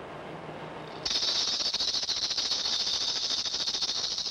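A faint low hum, then about a second in a hand rattle starts shaking rapidly and continuously in a dense, high, hissing rattle.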